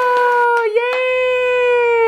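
A baby's voice holding a long, steady "aah" at one pitch, breaking off just under a second in and starting again at the same pitch.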